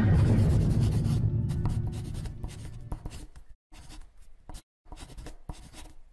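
A pen writing in many short strokes with brief gaps between them. A low tone left over from the music fades out during the first two seconds.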